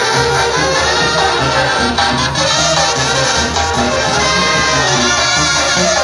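Brass band music with trumpets and trombones over a repeating low bass line.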